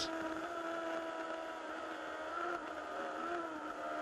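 Superstock racing motorcycle engine running at high revs in one steady, nearly unchanging note.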